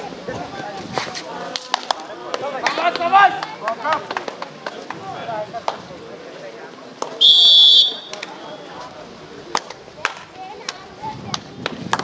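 A referee's whistle blown once in a short blast of under a second, about seven seconds in. Around it are shouting voices, loudest near the three-second mark, and scattered sharp smacks.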